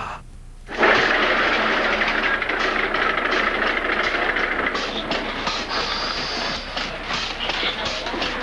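Hospital stretcher being rushed along a corridor: a steady rolling hiss and rattle with hurried footsteps, starting suddenly a little under a second in.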